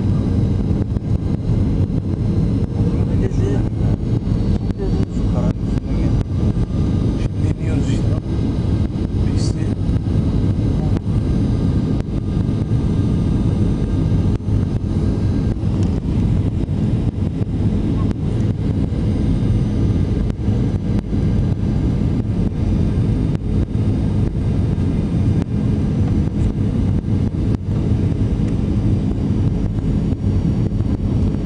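Steady airliner cabin noise in flight: a constant low rumble of engines and airflow, with a faint steady hum on top.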